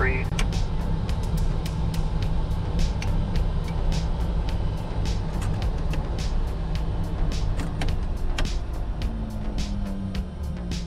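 Steady low cabin rumble of the Piaggio Avanti P180's twin PT6 turboprop engines, heard from inside the cockpit, with sharp clicks scattered through it. Background music comes in near the end.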